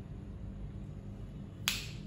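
Room tone with a faint steady low hum, broken near the end by one short, sharp click.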